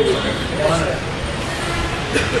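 Low, steady rumbling background noise in a pause in the speech, with a faint trace of voice about a third of the way in.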